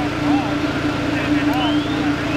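Fire engine's engine running with a steady hum and a low rumble, under indistinct voices.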